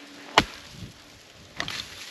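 Axe chopping into the wood of a snow-covered fallen evergreen tree: one sharp strike about half a second in, then a softer, rougher clatter near the end.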